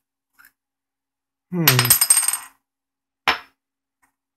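Small metal screws dropping onto a wooden tabletop, ringing and clinking as they bounce for about a second. A single sharp click of a part being set down follows near the end.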